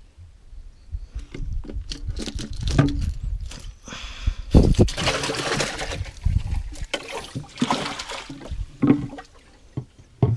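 Water splashing and sloshing in bursts as a freshly landed fish thrashes in the boat's water-filled storage box, with a few knocks from handling.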